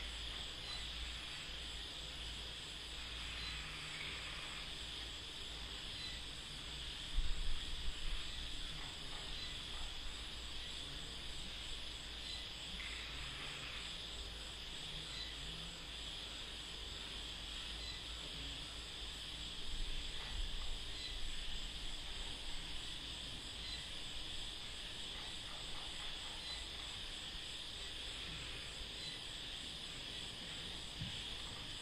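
Steady night chorus of insects and frogs: a continuous high-pitched shrill with faint repeated chirps. A brief low rumble comes about seven seconds in and again near twenty seconds.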